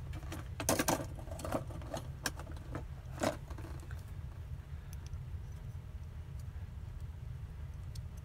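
Crop-A-Dile hole punch being worked on a metal bottle cap: a handful of sharp clicks and clacks over the first three seconds or so as the punch goes through, then a steady low hum.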